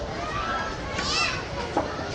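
Children's voices and chatter in a schoolyard, with a high child's call about a second in and a brief sharp click near the end.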